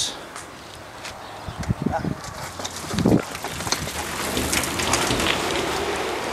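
A group of BMX bikes setting off down the track, tyres hissing on the surface, with scattered clicks and a few voices. The noise builds from about two seconds in.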